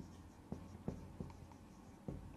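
Faint dry-erase marker writing on a whiteboard: a few light ticks and taps over a quiet room hiss.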